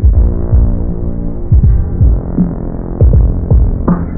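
Hardcore boom bap hip-hop instrumental, muffled as though low-pass filtered. Deep, falling bass-drum hits repeat several times a second over a sustained sampled tone.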